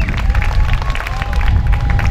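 Audience applauding, with a heavy low rumble of wind on the microphone.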